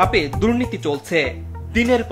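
Speech over background music, which has a steady low drone under it.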